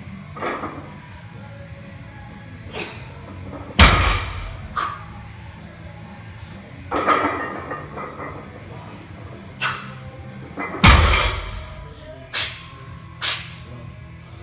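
A plate-loaded barbell set down on the gym floor after deadlift reps: two heavy thuds about 4 and 11 seconds in, with lighter knocks of plates and bar between them. Background music runs underneath.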